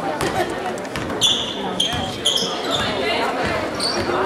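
Basketball dribbled on a hardwood gym court, with three or four short, high squeaks of sneakers on the floor from about a second in, over spectator chatter in the hall.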